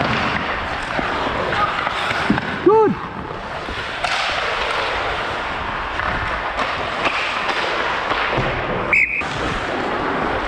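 Ice hockey play heard up close from the referee's skating position: a steady scrape and hiss of skate blades on the ice with scattered knocks of sticks and puck. There is a brief shout about three seconds in and a short high-pitched squeak near the end.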